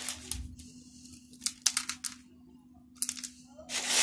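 Clay pebbles clicking and rattling as they are handled in a plastic planter pocket, in two short clusters about one and a half and three seconds in, over a faint steady hum.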